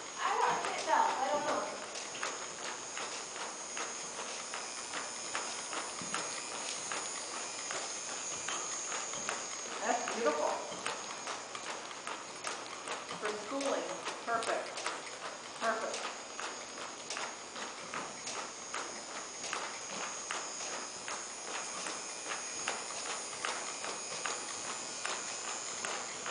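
A horse's hooves at a walk on soft arena dirt: a steady run of muffled footfalls, with a few faint voices now and then.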